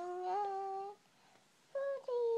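A toddler's voice holding a drawn-out, sing-song syllable for about a second, rising slightly in pitch. After a short gap, a second held note begins near the end. It is a number stretched out while counting aloud.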